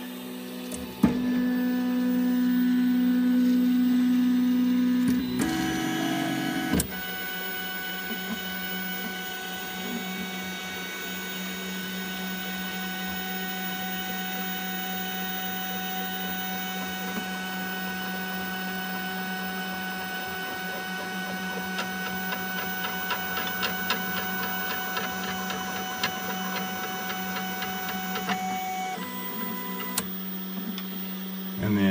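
Stepper motors of a homebuilt Prusa i3 3D printer driving its axes during a G28 auto-home. A sharp click about a second in is followed by a loud steady motor whine, which changes around six to seven seconds in and then runs on more quietly over a steady hum, with light ticking in the later part.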